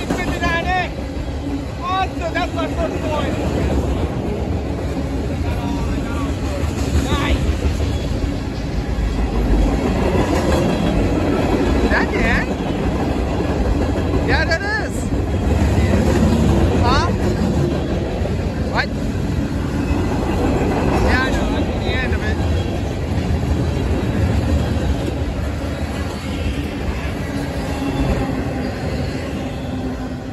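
Freight cars of a long Union Pacific train rolling past close by: a steady rumble of steel wheels on rail, with short high squeals from the wheels now and then.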